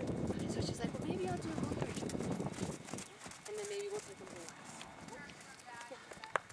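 Horse's hoofbeats on arena sand at a canter, loudest in the first three seconds and fainter after that.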